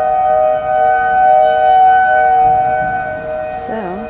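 Outdoor tornado warning sirens sounding a steady wail, several pitches held at once, swelling in loudness and then easing slightly toward the end.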